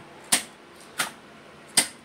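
Three sharp clacks, about 0.7 s apart, from a small three-phase contactor pulling in and dropping out as the start pushbutton is pressed and released. The contactor does not hold itself in, the sign of a miswired seal-in (holding) contact in the start circuit.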